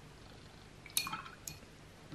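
Two short clinks about half a second apart, a watercolour brush knocking against a hard rim, the first one ringing briefly, as the brush is cleaned between colours.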